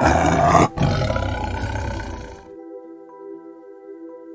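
A tiger roaring: a short loud burst, a brief break just under a second in, then a longer roar that fades away about two and a half seconds in. Soft background music with held tones plays underneath.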